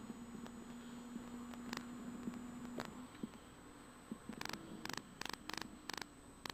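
Faint steady hum inside the Volkswagen R32 rally car at speed on a stage, dropping away about three seconds in. A run of short sharp clicks follows near the end.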